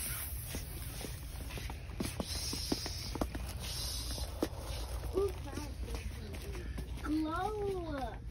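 Shop background: a low steady hum with scattered light taps of footsteps. A high-pitched child's voice speaks indistinctly about five seconds in and again, rising and falling, near the end.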